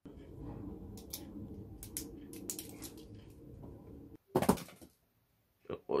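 Scattered light clicks over a low rumble of handling noise for about four seconds. Then, about four and a half seconds in, a louder short rustle.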